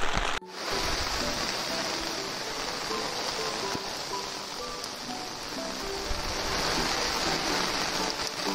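Steady rain falling, an even hiss, with soft background music playing over it. A brief break about half a second in.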